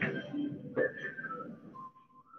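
A person whistling a few notes over a loud rush of even noise, which drops away near the end.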